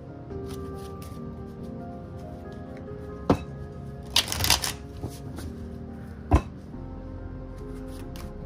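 A deck of cards being shuffled by hand: a quick riffle of rapid card flicks a little past halfway, with a single sharp knock about a second before it and another about two seconds after. Soft background music plays throughout.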